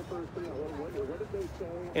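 Faint voices talking in the background, quieter than a close speaker.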